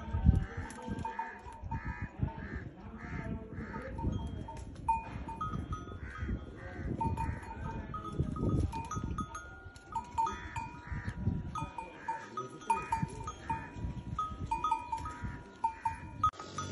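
A camel browsing on a thorny tree, pulling and tearing at the twigs and leaves, with irregular rustling and knocking of the branches.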